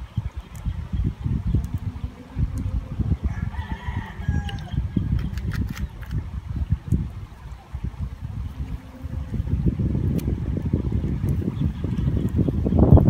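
Wind buffeting the microphone in a steady low rumble that grows stronger near the end. A rooster crows faintly once, about three to four seconds in.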